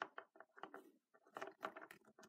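A faint run of quick, light clicks and taps, about ten in all with a short pause near the middle: small plastic toy pony figures being tapped and moved across a wooden tabletop.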